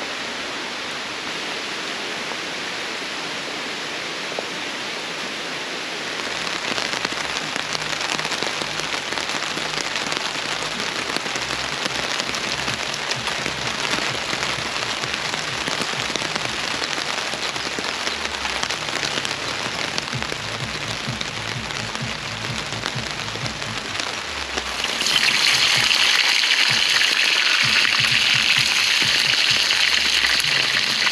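Rain falling steadily, growing heavier about six seconds in and louder again, with a brighter hiss, for the last few seconds.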